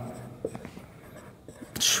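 Felt-tip marker writing on a whiteboard: faint scratches and light taps of the tip against the board. A short hiss comes near the end.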